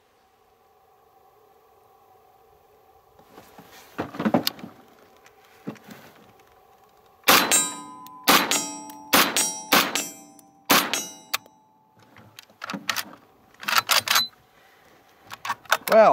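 Inland M1 Carbine, a new-made copy of the WWII carbine, fired from a bench rest. About six sharp shots come at uneven spacing, each with a short ringing tail, and quieter knocks and clicks from the rifle follow. The shooter calls it a rough start for a carbine with reliability problems.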